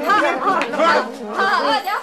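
Several people's voices talking over one another in a scuffle.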